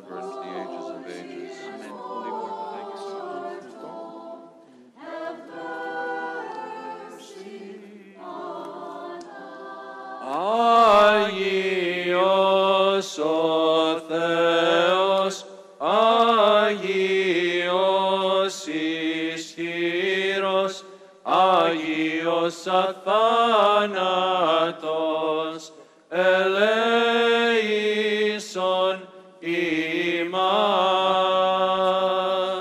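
Unaccompanied voices singing Greek Orthodox liturgical chant, with long sliding melodic phrases. The singing is softer at first and grows much louder about a third of the way in, continuing in phrases separated by brief breaths.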